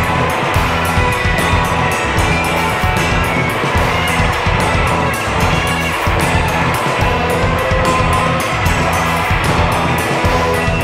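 Rock band playing an instrumental passage without vocals: electric guitar, bass guitar, keyboard and drums, loud and dense over a steady drum beat.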